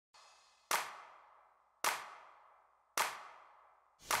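Three sharp hits a little over a second apart, each ringing away over most of a second: a percussive intro sound effect under the opening title.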